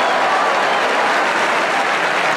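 Large studio audience applauding and laughing in a steady, dense wash of sound after a comedian's punchline.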